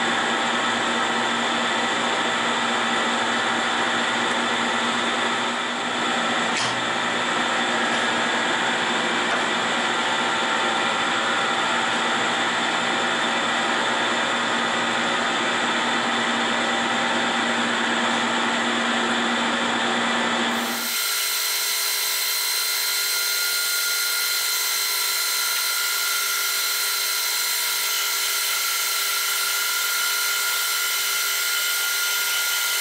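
Metal lathe running, turning down a steel shaft: a steady machine sound with a low hum. About two-thirds of the way through it changes abruptly to a thinner, higher sound with a few steady tones and no low hum.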